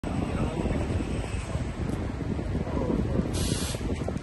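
Large coach bus engine idling with a steady low rumble, voices murmuring over it, and a short burst of air hiss from the bus about three seconds in.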